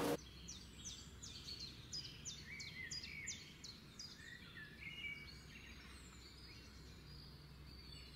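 Faint birdsong: a quick series of short, high chirps, each falling in pitch, dying away after about five seconds, over a low steady background hum.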